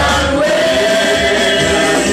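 A church praise team of several women and men singing a worship song together through microphones, with one long held note in the middle.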